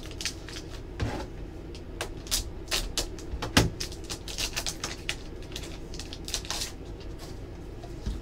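Foil trading-card pack wrapper crinkling and crackling as it is torn open and handled, with the plastic-held cards inside rustling as they are pulled out: a run of irregular sharp crackles.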